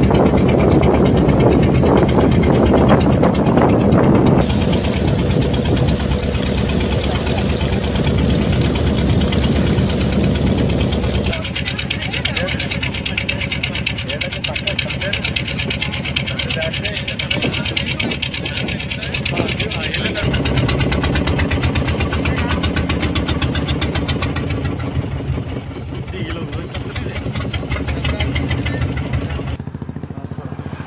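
An engine running steadily for the whole stretch, with people's voices over it, loudest in the first few seconds.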